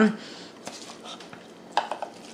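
Silicone spatula scraping moist chopped food from one bowl into a glass mixing bowl, with a few light knocks and clatters of spatula and bowl rims, the loudest a little before the end.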